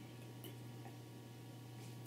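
Very quiet room with a steady low hum, and faint small wet mouth sounds of a man drinking soda from a plastic bottle.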